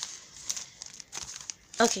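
Gift-wrapping paper crinkling in short, scattered rustles as a wrapped present is handled.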